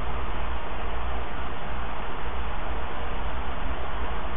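Steady background hiss with a low hum underneath, unchanging throughout, with no distinct events.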